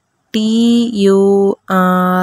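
A voice spelling out letters slowly, each letter name drawn out long on a steady, almost chanted pitch.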